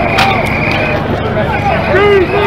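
Crowd of protesters shouting over a dense noise bed, with a sharp crack about a quarter of a second in and a high, steady tone through the first half.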